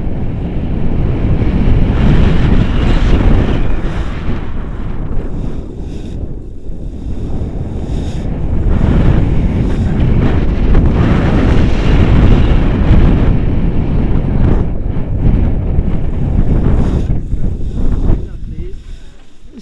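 Loud wind rushing and buffeting over the camera microphone from the airflow of a tandem paraglider in flight. It eases for a few seconds about six seconds in, then builds again through the final glide.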